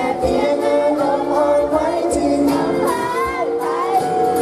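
A young man singing a Thai pop song live into a handheld microphone, with steady instrumental accompaniment underneath.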